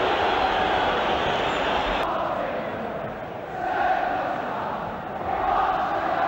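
Large football stadium crowd making a dense, continuous din of shouting and chanting. It drops suddenly about two seconds in, then swells up again twice.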